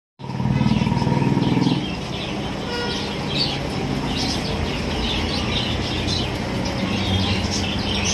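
Many small birds chirping over a steady low hum; the hum is louder for the first second and a half or so.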